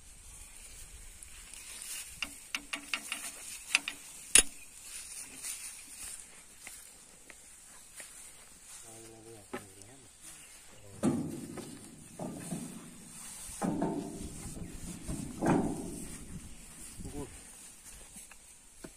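A quick run of sharp metal clinks and knocks, the loudest about four seconds in, from men handling the steel drawbar and hitch of a tractor trolley. Later, several bursts of people's voices calling out.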